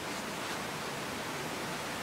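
Steady background hiss of the studio room tone, with no distinct sound event.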